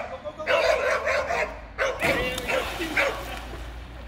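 Dog barking and yipping in excited bursts through the first three seconds, then quieting.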